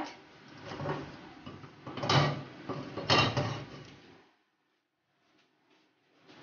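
Kitchen handling noise: a low rustling clatter with two sharper knocks about two and three seconds in. It cuts off suddenly a little after four seconds.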